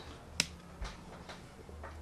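Handling noise as hands pinch shut the wetted edge of a small cornmeal-dough pastry: one sharp click about half a second in, then a few faint ticks.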